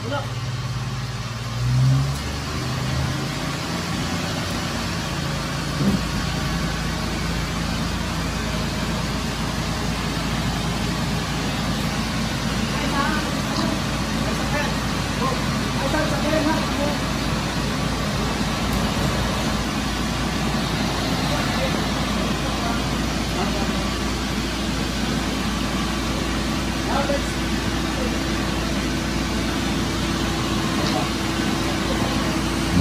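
Multicab utility truck's engine running steadily, louder for a moment near the start, with people's voices faint in the background.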